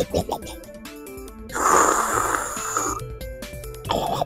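Background music, with a loud slurp of ramen noodles about a second and a half in, lasting about a second and a half.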